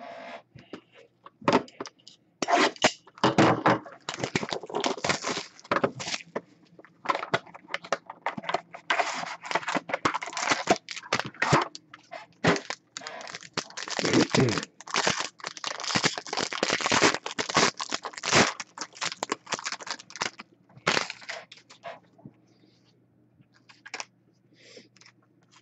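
A trading-card box and its foil pack being torn open by hand: plastic shrink-wrap and foil wrapping crinkling and tearing in many rapid, irregular bursts, which stop shortly before the end.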